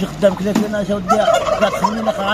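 Domestic poultry calling loudly, mixed with a man's voice talking.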